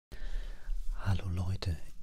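A man's voice close to the microphone: a breathy sound for the first second, then speech starting about a second in.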